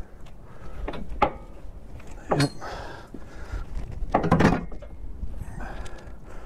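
Metal knocks and scraping clatter of a Wood-Mizer resaw attachment being worked into place on a portable sawmill's steel frame: a few sharp knocks about a second in and a louder clatter a little past four seconds. A low wind rumble on the microphone runs underneath.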